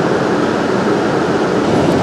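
Steady rumble of a coach bus's engine and cabin, heard from inside among the passenger seats.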